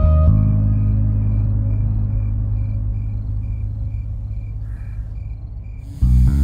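Background film-score music: a sustained deep drone with a soft high tone pulsing over it, slowly fading. Louder, fuller music comes in at the very end.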